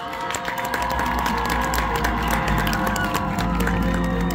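Stadium crowd cheering and applauding a high school marching band, with a sustained chord held underneath. The claps and shouts build up over the first second.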